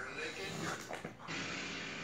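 Speech from a television in the background, with faint sounds of two English bulldogs at play over a plush toy.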